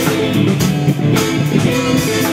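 Live blues band playing, with electric guitar and a drum kit.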